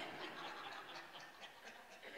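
Faint, soft chuckling from the congregation.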